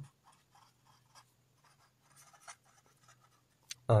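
Felt-tip marker writing on paper: faint, quick scratching strokes as a word is written out.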